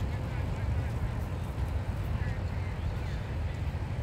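Steady low rumble of wind buffeting the microphone, with a few faint distant voices about halfway through.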